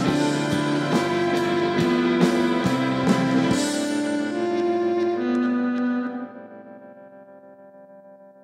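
Live rock band closing out a song: drum kit strikes over sustained electric guitar chords, with the drums stopping about three and a half seconds in. The chords ring on, then drop away about six seconds in, leaving a faint fading tone.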